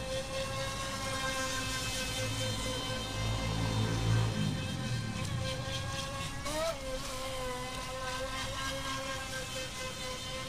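Feilun FT009 RC speedboat's brushless electric motor whining at a steady high pitch as the boat runs on the water, with a brief rise and fall in pitch about two-thirds of the way in. A low rumble swells and fades around the middle.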